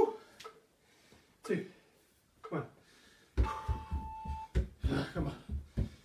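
Heavy breathing after an exercise interval, then from about three and a half seconds in, feet in socks thudding quickly, about three or four steps a second, on an aerobic step platform during box steps. A steady beep lasting about a second sounds as the stepping begins.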